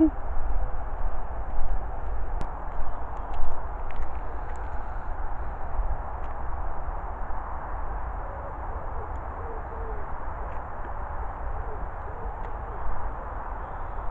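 Steady distant roar of motorway traffic through woodland, under a low rumble from wind and handling on the camera microphone. Two faint low hoots come a little past the middle.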